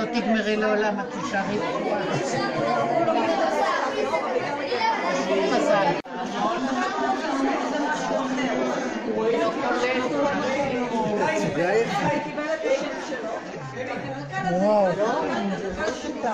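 Many people talking at once, overlapping chatter with a roomy echo, broken by a brief drop-out about six seconds in.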